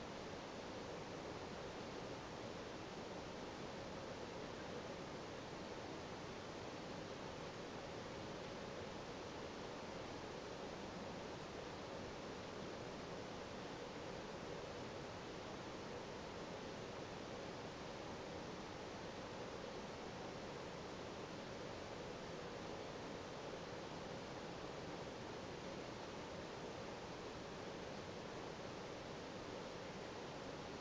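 Steady faint hiss of the recording's background noise, with no distinct sounds.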